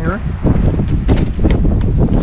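Wind buffeting the microphone: a loud, low rumble that sets in about half a second in, with a few short clicks through it.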